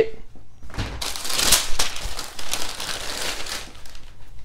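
Tissue paper crinkling and rustling as a sneaker is pulled out of its shoebox, a dense crackle from about a second in until near the end.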